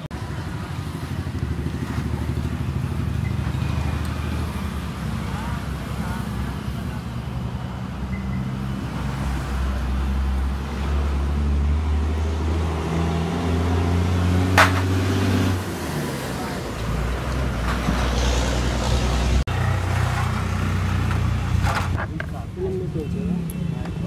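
A motor vehicle's engine running nearby, its low hum shifting in pitch in steps, with a single sharp click a little past halfway.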